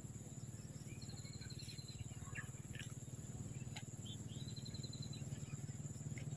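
Faint outdoor ambience: small birds giving short high trills of quick repeated notes, once about a second in and again past the middle, over a low steady hum.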